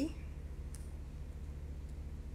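Steady low electrical hum with a faint click about a second in, as fingers handle the cardboard door of an advent calendar.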